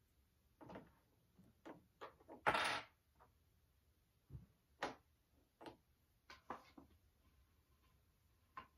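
Light clicks and knocks of toys and wooden blocks being picked up and set down on a wooden sideboard, a dozen or so scattered taps, with one louder half-second burst of noise about two and a half seconds in.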